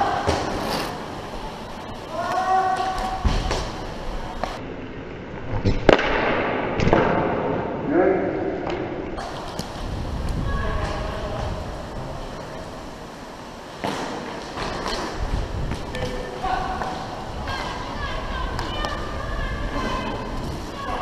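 Roller hockey play heard from a player's helmet: players calling and shouting to each other. Sharp cracks of sticks and puck, the loudest about six seconds in, sound over the low rumble of skate wheels on the rink floor.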